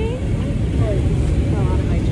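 Steady low rumble, with brief faint snatches of voices partway through and near the end.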